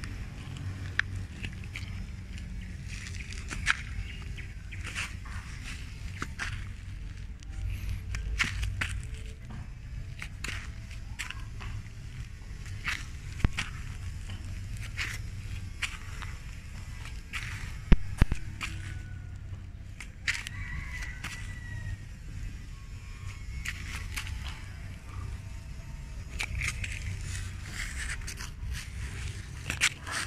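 Footsteps and scuffs on dirt, grass and dry leaves, with a low rumble of phone handling and scattered clicks and scrapes throughout. A short high chirp sounds about twenty seconds in.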